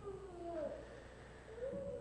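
Two faint, brief voice-like sounds with sliding pitch: one falls near the start and the other rises near the end.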